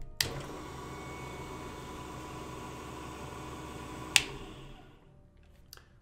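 Small Proxxon bench drill press motor switched on with a click and running unloaded with a steady whine, then switched off with a second click about four seconds in and spinning down.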